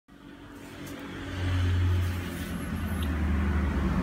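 Engine noise of a road vehicle: a low steady hum that swells up from quiet over the first second and a half, its pitch dropping slightly about halfway through.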